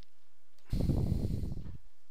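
A breath blown across a close microphone: a noisy rush with a low rumble, lasting about a second, starting just under a second in.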